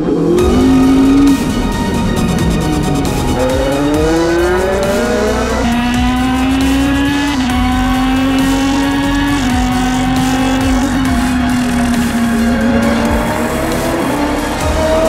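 Ligier LMP2 race car's V8 engine accelerating, its pitch climbing steeply for a couple of seconds and then holding nearly level, with background music under it.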